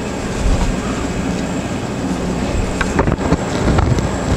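CO2 laser engraver running: a steady rushing machine noise with a low rumble underneath and a few faint knocks.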